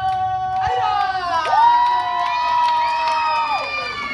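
A group of children cheering and yelling, several long high shouts held and overlapping, some rising in pitch, easing off near the end.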